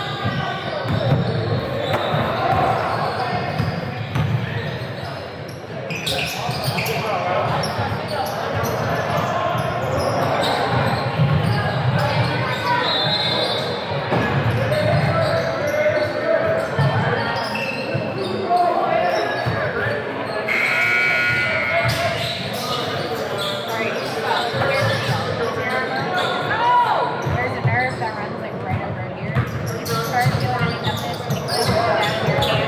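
Indistinct chatter of players and spectators echoing in a large gymnasium, with a basketball bouncing on the hardwood court.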